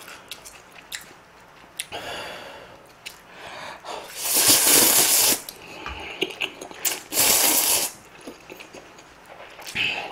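A person slurping spicy instant ramyeon noodles off chopsticks. There are two long, loud slurps, about four and seven seconds in, with quieter chewing and small clicks between them.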